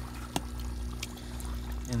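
Air bubbling up into pond water from an aquarium air line, over a steady low hum, with one sharp click about a third of a second in.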